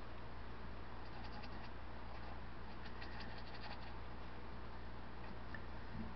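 Faint scratchy dabbing of a small paintbrush scrubbing paint onto a canvas, in short clusters, over a steady low hum.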